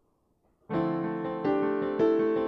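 Yamaha digital piano playing right-hand doublets, two-note intervals from the C pentatonic scale, over left-hand notes. It comes in about two-thirds of a second in, after a brief silence, and a fresh set of notes is struck about halfway through.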